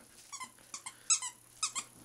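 A squeaky dog toy being bitten by a bearded collie: about nine short, high squeaks in an irregular series.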